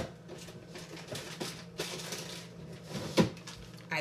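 Kitchen rummaging during a search for a bag of shredded cheese: a few knocks and clatters with soft rustling between them, as doors and containers are moved. The loudest knocks come right at the start and again about three seconds in.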